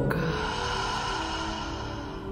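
A long exhale through the mouth, heard as a breathy hiss that fades away over about two seconds, over soft ambient music with sustained tones.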